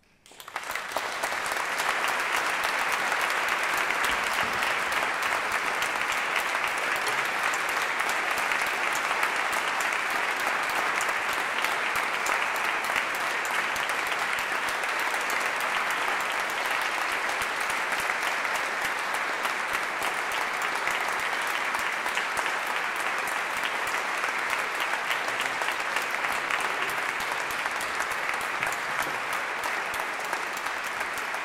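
Audience applauding: many hands clapping together. The applause breaks out suddenly just after the start and goes on at a steady level.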